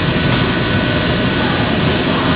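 Steady running noise of shoe-upper welding machinery: a continuous hum with two faint high steady tones above it and no strikes or pauses.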